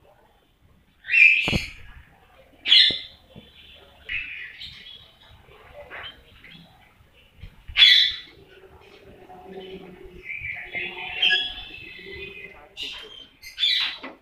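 Birds calling: a series of loud, short, high calls, one every second or few, over a faint background.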